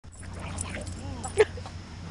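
Two dogs playing tug-of-war, giving short, rising-and-falling yips and whines, with one loud sharp yip about one and a half seconds in.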